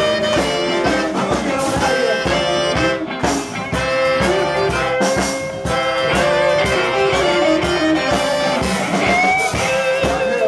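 Live blues band playing, led by a saxophone section with a baritone saxophone holding long horn lines over a steady drum beat.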